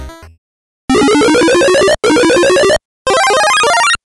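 The last moment of a music cue, then three loud bursts of synthesized video-game-style sound effects, each a fast run of bright electronic notes lasting about a second, with short gaps between.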